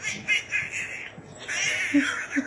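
A man making a high, squeaky duck-like squawking noise with his voice: a quick run of short squeaks, then one longer squawk near the end.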